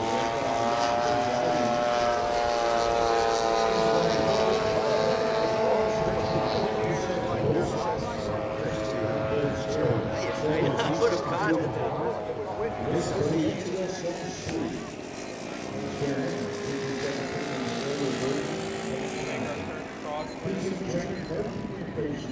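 Engine and propeller of a radio-controlled scale Cessna 152 model in flight, a steady droning tone that falls slightly in pitch in the first few seconds as the plane passes. It grows fainter after about eight seconds and comes back more weakly later.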